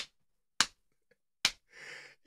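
A man laughing hard: three sharp hand slaps, spaced well under a second apart, then a faint breathy laugh near the end.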